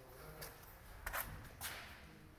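Three short, faint scuffs from someone moving about close to the microphone while filming, the middle one the loudest.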